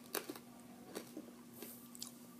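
Faint mouth clicks and lip smacks, a few in two seconds, from people sucking on sour hard candy, over a low steady hum.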